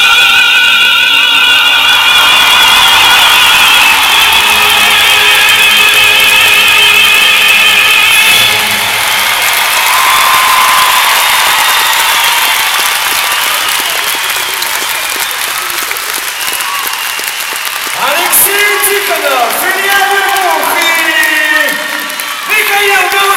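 Recorded operatic singing ending on a long held note with strong vibrato, cut off after about nine seconds. Arena audience applause then carries on, and a voice comes in near the end over the clapping.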